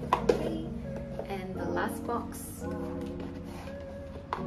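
Background music with a steady, gentle accompaniment. Over it come two sharp clicks just after the start and some rustling of packaging as a gift box is handled and opened.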